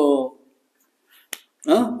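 A single sharp finger snap in a short pause, a little past the middle, between stretches of speech.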